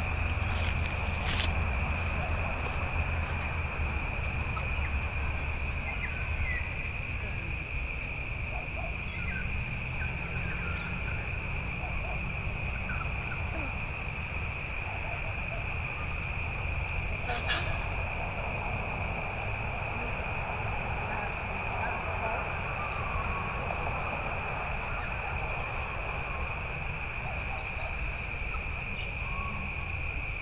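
Outdoor ambience: scattered short bird chirps over a steady high-pitched whine and low wind rumble, with a sharp click about seventeen seconds in.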